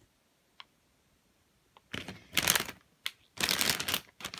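A clear plastic bag around a model kit's parts runner crinkling and rustling as it is handled, in two loud bursts in the second half. A couple of faint clicks come before them.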